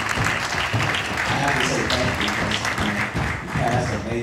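Audience applauding, with music and voices underneath.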